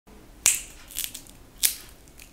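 Peanuts in the shell being cracked open by hand: three sharp, short cracks of shell breaking between the fingers.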